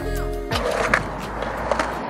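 Background music that cuts off about half a second in, then skateboard wheels rolling on concrete with a few knocks.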